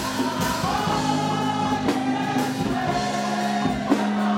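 A church congregation and choir singing a gospel song together in long held notes, with a few drum strikes.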